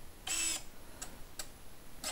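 Campagnolo EPS electronic front derailleur's motor making a brief whir as it shifts on a wireless command, followed by two light clicks.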